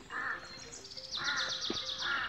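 Crows cawing, one harsh call about every second, while a small bird sings a fast trill of high, quick repeated notes from about a second in.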